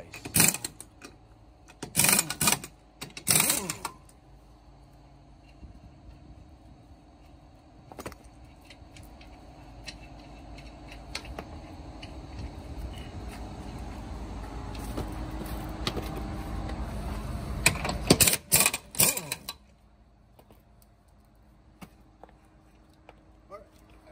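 Impact wrench hammering on a truck's lug nuts to loosen them, in three short bursts in the first four seconds and again in a cluster about 18 seconds in. In between, a low hum slowly grows louder.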